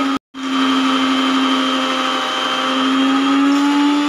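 Electric mixer grinder with a stainless-steel jar running steadily, blending pomegranate seeds with added water into juice. The sound cuts out for a moment just after the start, then the motor hum runs on with its pitch rising slightly.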